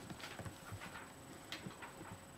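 A run of faint, irregular clicks and taps, about seven in two seconds.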